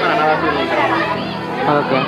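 Speech: people talking, with voices running through the whole stretch.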